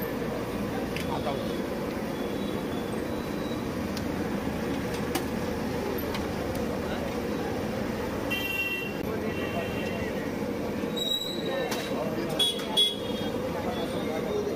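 Busy street ambience: a steady wash of traffic and voices, with a short vehicle horn toot about eight seconds in and two sharp knocks near the end.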